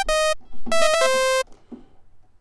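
Xfer Serum software synth on its default patch, a bright raw sawtooth. It plays a short note, then a quick run of notes that ends on a held lower note and stops about a second and a half in.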